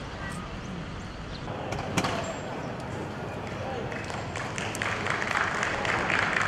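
Outdoor background noise with indistinct voices, broken by one sharp knock about two seconds in. A louder, steady hiss builds up near the end.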